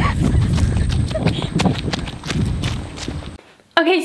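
Hurried running footsteps on dirt and grass, an irregular patter of knocks over a rough low rumble from the jostled handheld camera. It cuts off abruptly near the end.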